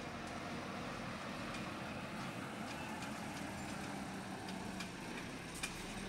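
Heavy diesel lorry hauling a fairground ride trailer slowly past, its engine running with a steady low hum under road noise. A short sharp click comes near the end.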